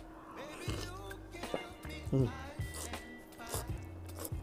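Quiet background music with a steady low tone, under soft mouth sounds of a man slurping and chewing noodles. A short hum of approval comes about two seconds in.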